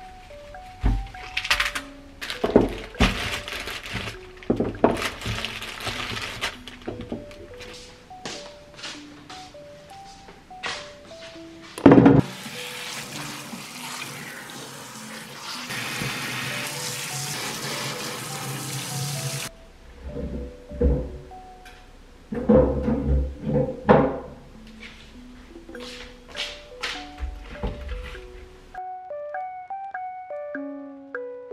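Kitchen tap water running onto vegetables in a stainless steel sink for about seven seconds through the middle, starting right after one loud thunk. Light knocks of vegetables being handled come before and after, with a cluster of heavier knocks later on, all over soft background music.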